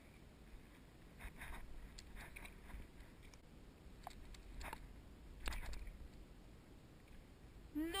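Faint wind rumble on the microphone with a few light, scattered taps, ending in a drawn-out wailed cry just before the end.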